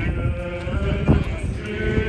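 A crowd walking in an Orthodox church procession: shuffling footsteps on the street with voices singing a chant, and one sharper knock about a second in.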